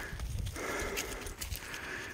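A person breathing hard from the exertion of a steep climb, one heavy breath about every second, with the scattered crunch and knock of feet on rock and dry leaves.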